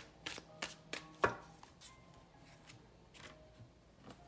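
Sharp taps and clicks of a cardboard tarot card box and cards being handled on a tabletop: several quick ones in the first second or so, the loudest just over a second in, then a couple of softer ones. Faint background music runs underneath.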